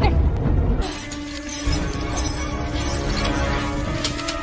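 Film score music with a crash of shattering glass about a second in, the breaking glass scattering on above the sustained music.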